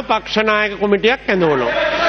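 A man speaking in a raised voice into a chamber microphone. A din of other voices builds up under him from about two-thirds of the way in.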